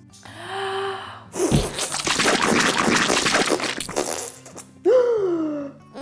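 A woman's voice making a vocal sound effect of the vacuum hose blasting out paint: a short gasp-like sound, then a loud, rough, breathy 'pshhh' that starts with a pop and lasts about two and a half seconds, then a falling 'ooh' near the end. Soft background music runs underneath.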